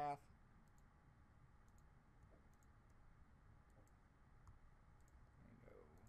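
Several faint computer mouse clicks, spaced irregularly, over near silence, as points on a mask path are clicked and dragged.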